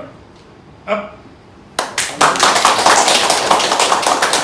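A small group of people clapping their hands, starting about two seconds in and getting louder, continuing to the end.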